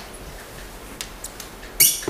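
A few faint clicks from a laptop being worked over a steady hiss from a poor recording, with a short, loud, hissy burst near the end.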